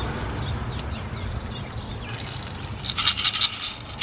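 A small hard hand-held object rattling and scraping as it is handled and shaken, in two short spells in the second half.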